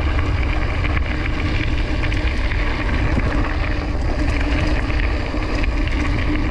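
Mountain bike rolling fast over a loose gravelly dirt road on Fast Track tyres: a steady, loud tyre rumble mixed with wind noise on the microphone.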